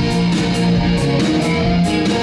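Live rock band playing an instrumental passage with no singing, electric guitar to the fore over a steady beat.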